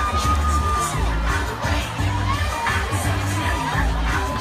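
Crowd cheering and children shouting over music with a heavy bass beat.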